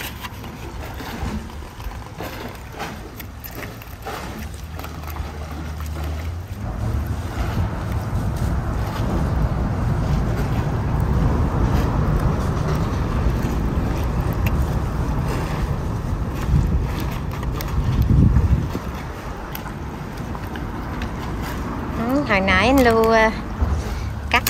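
Low, steady engine rumble of a passing motor. It builds from a few seconds in, is loudest in the middle and eases off, with a few light knocks near the start and brief talk at the very end.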